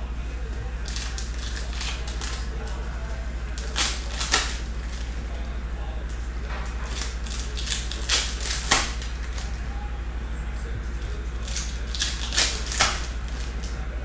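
Trading cards handled and flicked through by hand, giving sharp snaps in small clusters of two or three, about four, eight and twelve seconds in, over a steady low hum.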